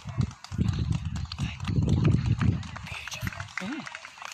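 Uneven low buffeting rumble on the microphone, loudest in the middle, with scattered faint clicks and faint background voices.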